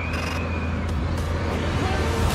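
Film trailer sound design: a deep, steady low rumble, with a high held tone coming in at the start and fading within the first second, and a few faint clicks.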